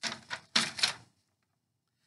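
A printed photo on a sheet of paper being handled and put down: a quick run of four or five crackles and light taps lasting about a second.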